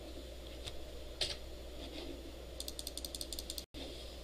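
Computer mouse clicking: a few single clicks, then a rapid run of about ten clicks in a second near the end, over a steady low room hum. The audio drops out for an instant just before the end.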